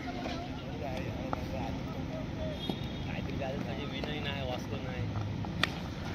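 Faint, distant voices of players calling across the ground over a steady low rumble, with one sharp click near the end.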